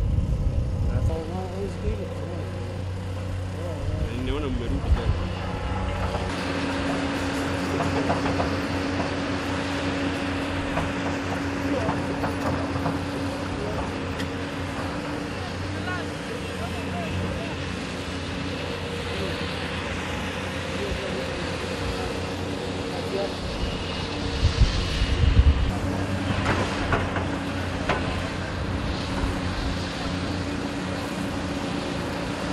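Doosan tracked excavator's diesel engine running steadily at a construction site, with a steady hum and low rumbles near the start and about 25 seconds in.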